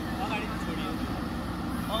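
JCB backhoe loader's diesel engine running steadily while it works its arm to load soil, with men's voices over it.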